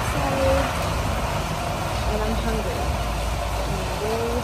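A woman talking quietly, her faint voice half buried under a steady hiss and low rumble of background noise.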